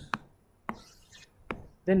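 Three sharp taps of a stylus on a tablet screen, unevenly spaced, while a handwritten block is selected and moved, followed by a man saying a word near the end.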